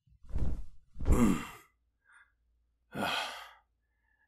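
A man's voice gives a low, tired "mm" with falling pitch, then a long breathy sigh near the end, the exhausted breathing of a wounded creature that has only just made it to safety. A dull thump comes just before, about half a second in.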